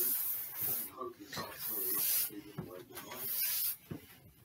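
A man going down a carpeted indoor staircase: three hissing rushes about a second apart, with soft footfalls between.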